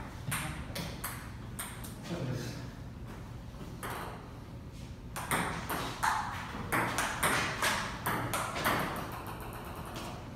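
Table tennis rally: a ping-pong ball clicking off paddles and the table. It starts with a few scattered hits, then from about five seconds in comes a quick, even run of about three hits a second.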